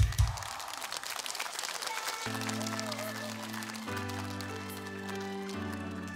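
Audience applause for about the first two seconds, then the slow intro of the next song's backing music comes in: held, sustained chords changing every second or so.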